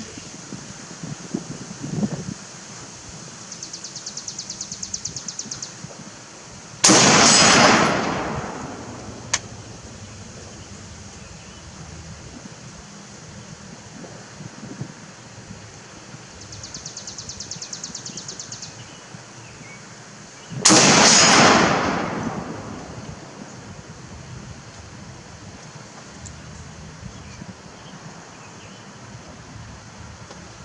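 Two rifle shots from a Beretta ARX 100 with a 10-inch barrel, firing 5.56×45mm, about fourteen seconds apart. Each is a sharp crack that trails off for over a second.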